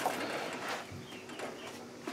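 A bird calling faintly in the background: a soft, low-pitched call.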